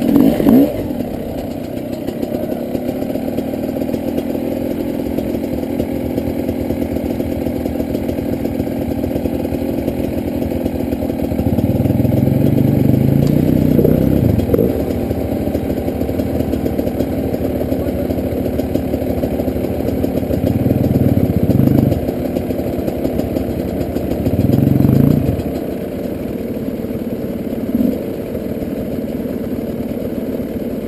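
Off-road dirt bike engines running at low speed on a steep rocky climb. The engines are opened up in several short bursts of revs, about a third of the way in, two-thirds of the way in and near the end.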